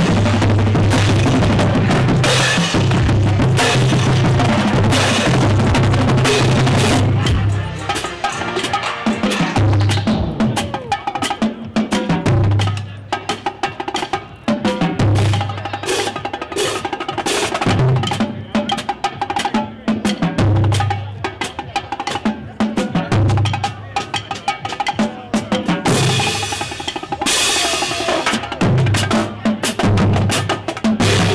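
A marching drumline plays a cadence on bass drums, tenor drums and cymbals. The playing is dense and loud for the first seven or so seconds. Then it turns sparser, with low bass drum hits about every two and a half seconds and a cymbal burst near the end.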